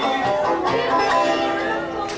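Banjo played solo in a lively old-time tune, an instrumental break of picked notes without singing.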